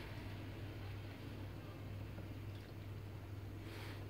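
Faint sounds of soft dough being kneaded by gloved hands in a plastic bowl, over a steady low hum.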